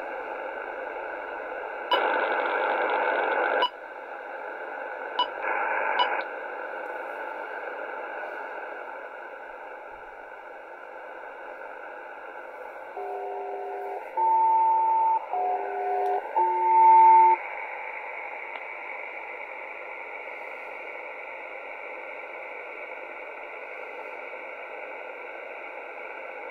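Steady hiss of HF single-sideband air-traffic radio through a shortwave receiver, with two louder bursts of noise about two and five seconds in. Past the middle come four two-tone beeps of about a second each in quick succession: SELCAL tones, the selective-calling code that alerts one aircraft's crew to a call from the ground station.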